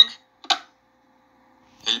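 Cartoon dialogue played through laptop speakers: a line ends, one short click about half a second in, then about a second of near silence before a voice begins again near the end.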